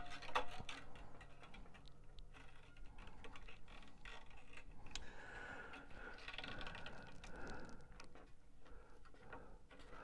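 Faint, scattered clicks and light scraping of steel guitar strings being handled and wound around the tuning posts of a small acoustic guitar's headstock.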